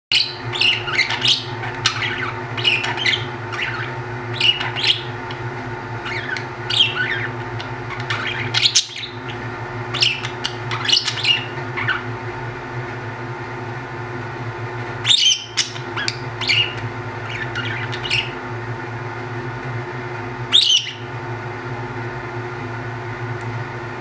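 Budgerigars chirping and chattering in quick short calls, with a few louder sharp squawks standing out about every six seconds. A steady low hum runs underneath.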